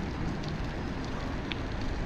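Steady low rumble and hiss of wind on the microphone and tyres rolling on asphalt while riding, with a few faint ticks.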